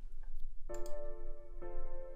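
A software instrument (the FLEX synth in FL Studio) plays back a chord progression from the piano roll: after a faint mouse click, a sustained D minor chord sounds, then changes to an F major chord near the end.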